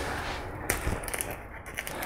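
Light handling of a gallon plastic wood-glue jug: one sharp click about a third of the way in, then a few soft ticks near the end as its screw cap is gripped and twisted.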